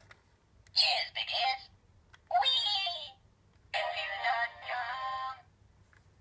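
The Confused.com Brian talking toy robot's voice box playing three short recorded voice clips through its small built-in speaker, set off by the chest button. The clips come about a second in, just after two seconds, and a longer one from about four seconds.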